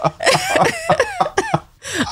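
People laughing: a run of short, breathy bursts, each falling in pitch, that trails off a little before the end.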